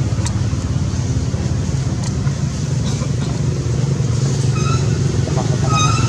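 A steady low engine rumble runs throughout, with two short high-pitched squeaks near the end.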